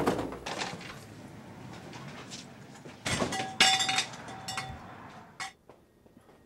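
A crash tailing off as a man tumbles to the floor among stacked cardboard helmet boxes. About three seconds in come a second burst of sharp knocks and clinks and a short ringing tone, then a single click.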